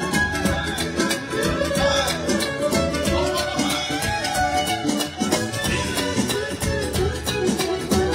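A live manele band playing a fast instrumental dance tune: a violin leads the melody over large double-headed bass drums beaten with mallets, with a steady beat.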